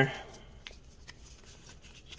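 Faint handling of a stack of trading cards: soft sliding with two or three light ticks as cards are flipped through in the hand.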